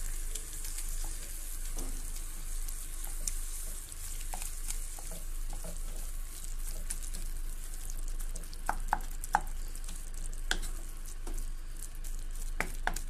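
Greens and soft white cheese sizzling in a nonstick frying pan while being stirred with a wooden spatula, with a steady high hiss under small scraping clicks. A few sharper knocks of the spatula against the pan come late on.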